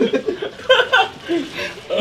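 People laughing and chuckling in short bursts, mixed with a little speech, in a small room.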